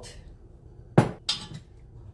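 Ingredient containers handled on a kitchen counter, including a glass mason jar: a sharp knock about a second in and a lighter one just after.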